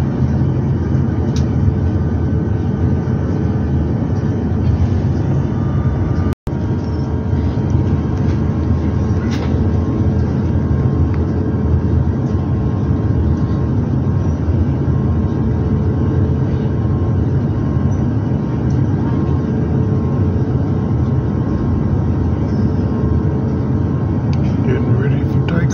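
Steady, loud cabin rumble of an airliner moving on the ground, with a few faint steady tones above it. The sound cuts out for an instant about six seconds in.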